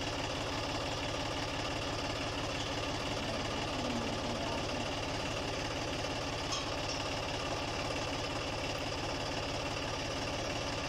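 John Deere tractor's diesel engine idling steadily, with a rapid, even knock.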